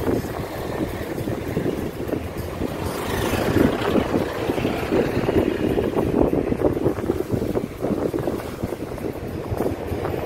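A car driving on a road, heard from inside: a steady rumble of engine and tyre noise with wind buffeting the microphone.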